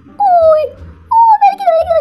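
A high-pitched whimpering whine: two drawn-out cries that slide downward in pitch, the second starting about a second in and lasting longer.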